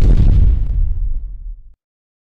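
Cinematic explosion sound effect for a fiery logo reveal: a loud, deep boom at the start that rumbles and fades, then cuts off abruptly shortly before the end.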